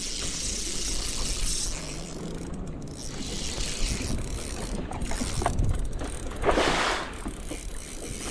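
Wind rushing over the microphone above open water, with a spinning reel being cranked as a hooked bass is reeled in. A louder gust comes about six and a half seconds in.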